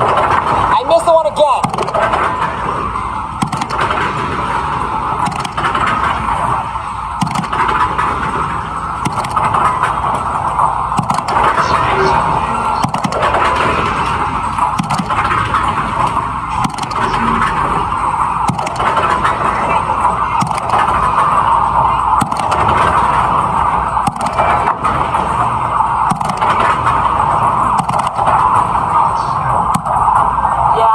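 Busy arcade din: a steady loud wash of background crowd chatter and game-machine sounds.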